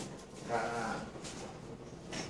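A young woman's short spoken reply, the Thai polite particle "kha", drawn out with a wavering pitch, followed by a few faint knocks.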